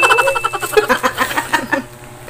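A woman giggling in quick, breathy bursts during an underarm waxing, fading toward the end. A bell-like ding rings over the first part and dies away.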